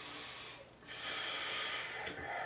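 A man breathing audibly in two long breaths: a fainter one that ends about half a second in, then a louder one starting just under a second in.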